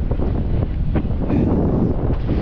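Wind on the microphone: a loud, steady low rumble.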